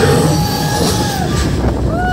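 Test Track ride vehicle rumbling at speed as it bursts out of the building onto the outdoor high-speed loop, a loud steady rush of wheels and air. A long held high tone rides over it for about the first second.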